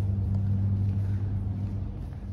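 A steady low hum with a faint hiss over it, like a motor or fan running, with no change in pitch.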